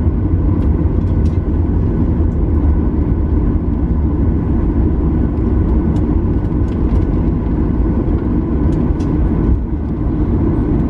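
Cabin noise of a Boeing 737-900ER taxiing: a steady low rumble from its CFM56 engines at idle and its rolling wheels, with faint steady whine tones and occasional light clicks.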